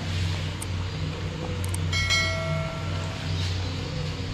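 A metal ladle strikes a large metal cooking pot about halfway through, ringing for about a second over a steady low kitchen hum.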